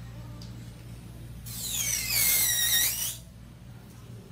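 Electric nail drill (e-file) whining at high pitch for about a second and a half, starting about a second and a half in. Its pitch dips and then rises again before it stops, over a steady low hum.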